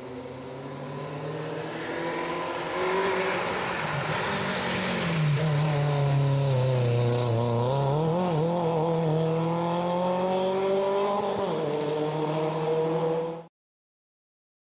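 A rally car's engine at high revs grows louder as the car approaches on the tarmac stage. Its note drops for a couple of seconds around the middle as the driver lifts off for a bend, then climbs and wavers as it accelerates out. The sound cuts off suddenly just before the end.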